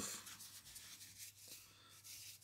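Faint rustling of a small padded fabric jacket being handled between the fingers.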